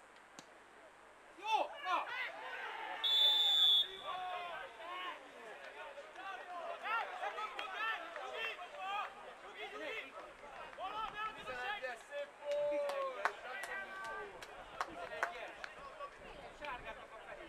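A referee's whistle blown once for nearly a second, about three seconds in, over shouting from players and spectators. It stops play for the foul in the penalty area that leads to the penalty.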